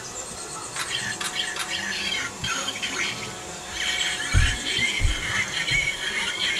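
Electronic transformation sound effects and jingle of a Kamen Rider Ex-Aid Gamer Driver belt: chirping, beeping game-style sounds over music, with two low thuds a little over half a second apart near the end.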